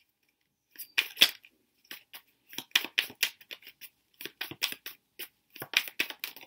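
Tarot cards being shuffled and handled: a run of quick, irregular clicks and snaps starting about a second in.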